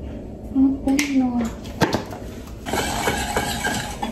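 A voice speaking briefly over kitchen handling sounds: a couple of sharp clicks as a small plastic seasoning container is handled at the stove.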